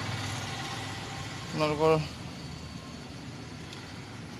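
Steady low background hum, with one short spoken word about halfway through.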